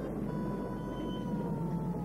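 Siren sounding as a held tone that slowly falls in pitch, over a steady rush of spraying water.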